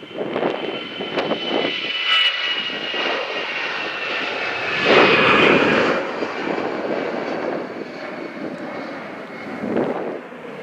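Airliner passing by the airfield, its engines giving a steady whine that drifts slightly down in pitch, loudest about five seconds in and then easing.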